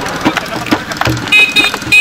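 Rhythmic thumps beaten by hand on a blue plastic water cooler used as a makeshift drum, mixed with crowd voices. A high tooting note sounds over it near the end.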